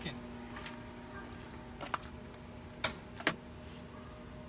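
Lamborghini Huracán clicking instead of cranking when a start is tried: a few sharp, irregular clicks about a second apart over a faint steady electrical hum. This is the no-start condition that the crew thinks most likely comes from a cut wire or a bad ground.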